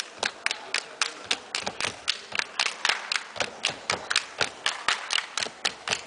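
Sharp hand claps in a quick, steady rhythm, about four a second.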